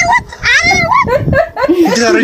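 A woman talking in a lively, high voice, with laughter mixed in.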